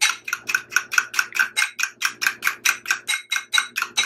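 Metal fork whisking egg white and cornstarch in a glass bowl, the fork striking the glass in a fast steady rhythm of about six strokes a second, with a brief pause about three seconds in.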